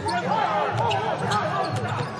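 A basketball being dribbled on a hardwood arena court, with voices in the background.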